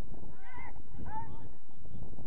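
Two short distant shouts, about half a second apart, over a steady low rumble of wind on the microphone.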